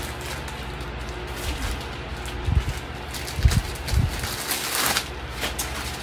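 Clothing being handled and shaken out: three dull low bumps in the middle and a burst of rustling near the end, over a steady low background hum.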